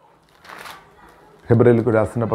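A brief soft rustle about half a second in, then a man's voice resumes speaking about a second and a half in.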